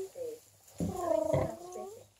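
Newborn piglet squealing: a short cry at the start, then one drawn-out squeal lasting about a second that dips in pitch at its end.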